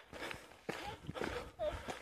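Footsteps on a stony dirt trail, roughly two a second, with brief fragments of voices in between.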